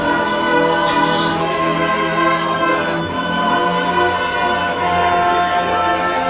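Live opera music: a small group of voices singing held notes over instrumental accompaniment with a low sustained brass line from a tuba.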